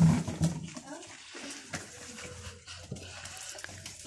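A goat bleats briefly at the start, followed by quieter scattered rustling and clicks as the goats feed on grass and scraps.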